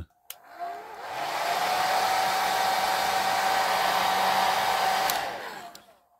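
Handheld hair dryer clicked on, its motor whine rising as it spins up into a steady rush of air with a clear whine. About five seconds in it is clicked off and winds down.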